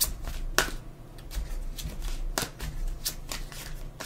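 Tarot cards being shuffled and handled: a dozen or so irregular, crisp snaps and flicks of card stock, over a low steady hum.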